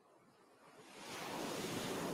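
Ocean surf: a wave rushes in, the noise building over the first second and a half and then holding.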